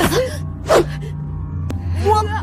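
A boy gasping twice as he is choked by a wooden sword pressed against his throat. Under the gasps runs a low, steady, tense music drone.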